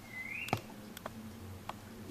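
A drinking glass being handled as juice is mixed into the water in it: a short rising squeak near the start, then a few light clicks.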